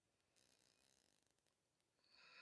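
Near silence: room tone, with only a very faint, brief hiss about half a second in.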